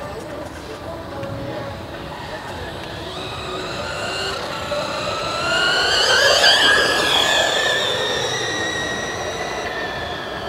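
High-pitched whine of an electric RC F1 car's motor and drivetrain at speed, growing louder as the car approaches, loudest about six to seven seconds in as it passes with its pitch falling, then fading as it drives away.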